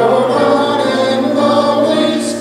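Church congregation singing a traditional hymn together, with held notes moving from one to the next.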